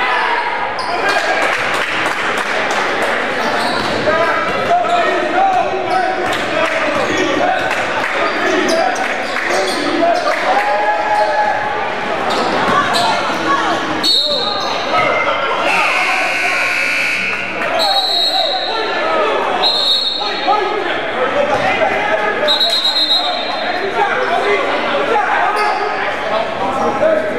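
Live basketball play in a large gymnasium: a ball bouncing on the hardwood court over continuous voices of players and spectators. A buzzer sounds once, briefly, about two-thirds of the way through.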